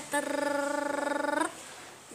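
A person's voice holding one steady note with a fast flutter for just over a second, like a hum or a drawn-out vowel, ending about halfway through.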